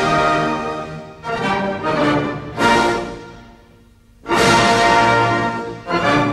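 Orchestral ballet music. A loud chord fades away, three short phrases swell and fall back, and after a brief lull a loud chord is held about four seconds in.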